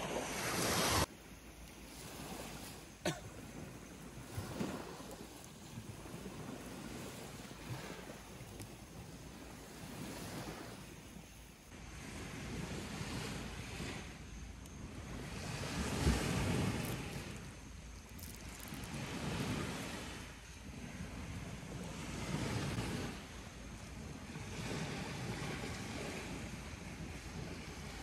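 Surf washing onto a beach, the noise of small waves swelling and falling away every few seconds, with wind buffeting the microphone. A couple of sharp clicks come in the first few seconds.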